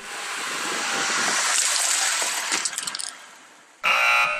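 A car tyre rolling over a phone on concrete: a hiss of tyre noise swells over about a second and a half, then a short run of crackles as the phone's glass screen protector is crushed, fading out about three seconds in. Near the end a loud wrong-answer buzzer sound effect starts.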